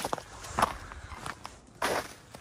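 Footsteps of a person walking over frozen, frost-covered ground: a few separate steps, the loudest one near the end.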